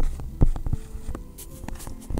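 A stylus knocking on a tablet touchscreen as numbers and a line are written, a few sharp taps, over a low steady hum.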